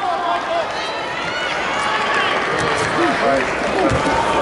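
Spectators and coaches shouting over one another, growing louder as one wrestler takes the other down to the mat. A short low thump near the end.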